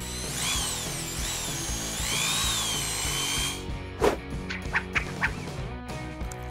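Electric drill boring through OSB board with a twist bit, its motor whine rising and falling in pitch for about three and a half seconds. About four seconds in comes a sharp knock, followed by a few short clicks, with background music throughout.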